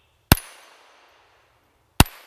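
Two shots from a Ruger Mark IV .22 LR pistol, one about a third of a second in and another right at the end, each a sharp crack with a short fading echo.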